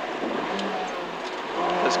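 Peugeot 205 GTi 1.9's four-cylinder engine running under load, heard from inside the cabin with road noise. The engine note eases off about a third of the way in and picks up again near the end.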